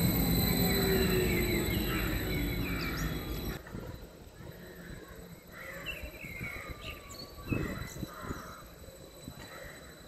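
A nordbahn Stadler FLIRT electric multiple unit running close by, with a low rumble and a falling whine that fade as it goes. About three and a half seconds in, the sound drops to quieter outdoor ambience with birds calling and a single sharp sound near the middle.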